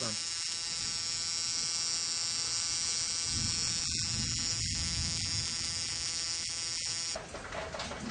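Battery-powered ignition coil tester buzzing steadily as it fires rapid sparks across a spark plug. The buzz cuts off suddenly about seven seconds in.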